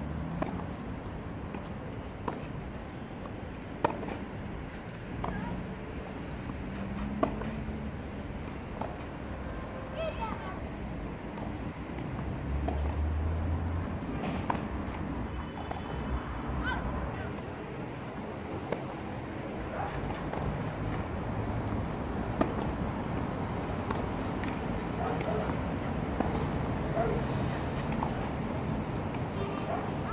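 Tennis rackets striking the ball during rallies: short, sharp pops, often a second or two apart, with faint voices in the background.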